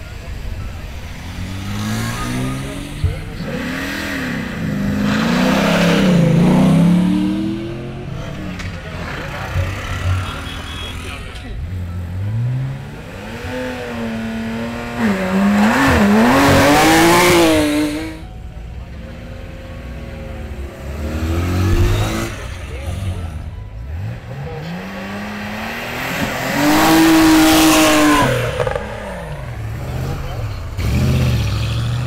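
Sports cars launching one after another from a hill-climb start line. Three times the engine revs hard and climbs in pitch through the gears as a car pulls away, once near the start, once midway and once near the end.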